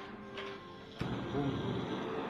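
Butane torch on a screw-on gas canister lit about a second in with a sharp click, then the flame hissing steadily and loudly, over faint background music.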